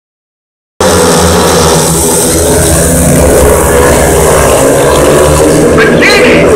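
Four speedway motorcycles' single-cylinder engines revving and accelerating hard as the race gets under way, loud and continuous. The sound cuts in abruptly about a second in.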